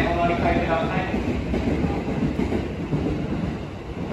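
JR East E231-0 series electric commuter train pulling into the platform and braking to a stop. Its running rumble fades toward the end as it halts.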